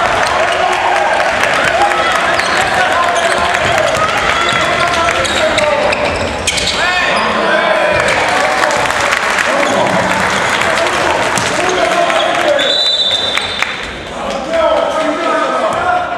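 Basketball game in a gym: a ball dribbling on the hardwood floor with players' shoe squeaks and shouting voices, and a short, high referee's whistle about thirteen seconds in that stops play.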